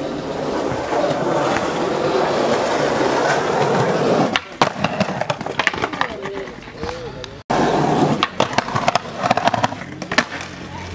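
Skateboard wheels rolling on concrete, then sharp clacks as the board pops and slides along a concrete ledge. After an abrupt cut there is more rolling with a few sharp clacks of the board.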